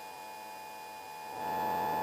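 Steady electrical hum with several faint whining tones over cockpit noise in a light sport aircraft in cruise, heard through the headset intercom feed. About a second and a half in, a louder rushing noise comes in and holds.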